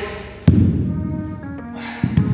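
Background music, with one sharp thud about half a second in as a pair of heavy dumbbells is set down on the floor.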